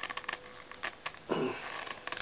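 Small plastic clicks and scrapes as the bowl of a cheap all-plastic tobacco pipe is worked loose from its casing, thickest at first with one sharp click about a second in. A brief murmur of effort follows about a second and a half in.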